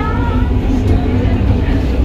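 Historic electric narrow-gauge railcar of the Ritten Railway heard from inside the car while running along the line, with a steady low rumble.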